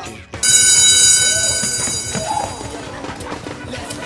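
A bell rings out suddenly about half a second in, a high metallic ringing that fades over about two seconds: a school bell marking the end of lessons. Faint children's voices and running feet follow.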